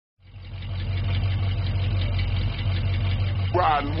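Car engine idling steadily, fading in at the start, with a low, evenly pulsing hum. A man's voice comes in near the end.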